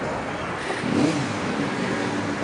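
City street traffic with a motor vehicle's engine accelerating. Its engine note comes in about a second in, wavering in pitch, over the steady traffic noise.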